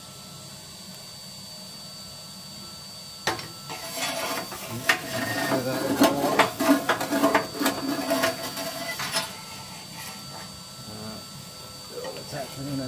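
A vacuum cleaner runs steadily with a metal tube attachment on its hose. From about three seconds in until near the end, the metal nozzle clatters and scrapes inside the stove's lower air vent as ash and grit rattle up the tube. It then settles back to the plain running hum.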